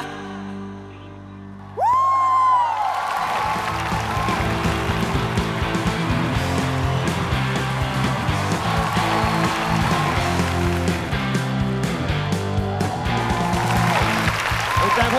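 A band's held final chord fades out as the singing ends, then about two seconds in a studio audience breaks into loud applause and cheering that carries on over the band's closing music.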